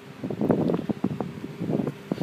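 Rustling with irregular light knocks and clicks, as a person gets into a car's front seat.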